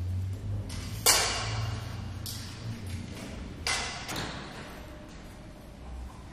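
A sharp knock about a second in that rings out for about a second, a second knock a few seconds later and a couple of lighter taps, over a low hum.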